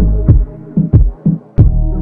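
Reggaeton instrumental beat: deep 808 bass and kick hits in a syncopated pattern under a sustained synth melody, with the high percussion dropped out.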